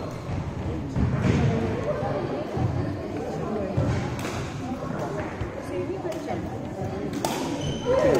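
Several people talking at once in a large sports hall, with a few sharp knocks scattered through it.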